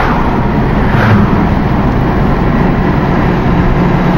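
Road noise heard from inside a moving car: the engine running and tyres rolling on the road, loud and steady, with a brief swell about a second in as an oncoming car passes.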